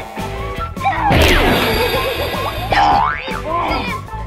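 Background music with a steady beat, overlaid by cartoon-style comedy sound effects. A loud wobbling, springy effect runs from about a second in to nearly three seconds, and a rising glide follows shortly after.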